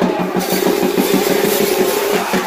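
Fast, even drumming, about seven beats a second, over a held tone and crowd noise.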